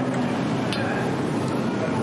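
A metal spoon working in a small stainless saucepan of sauce, with one light clink about two-thirds of a second in, over a steady hiss.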